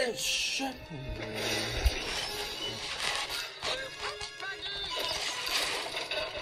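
Animated-film soundtrack heard through a tablet's speaker: a music score with crash and shattering sound effects, and a sharp hit about two seconds in.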